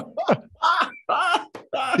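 Laughter: a run of short vocal bursts, the first ones falling in pitch, at the punchline of a joke.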